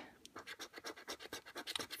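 A coin scratching the coating off a National Lottery Bingo scratchcard, faint, in a quick run of short strokes, uncovering the next caller's number.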